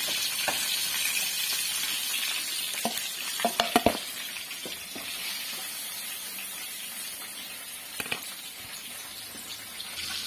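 Marinated chicken pieces sizzling in shallow oil in a frying pan, the sizzle slowly fading. A few light utensil knocks come about three and a half seconds in and again near eight seconds.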